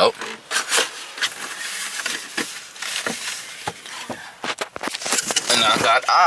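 Cardboard pizza box and paper being handled: an irregular run of rubbing, scraping and small clicks.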